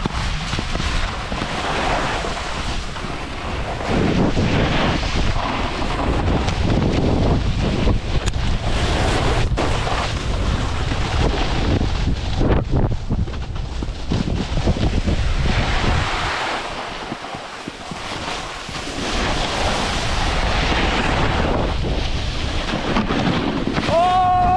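Wind buffeting the microphone while skis slide and scrape over snow, a steady rushing noise with a low rumble that eases for a couple of seconds about two-thirds of the way through.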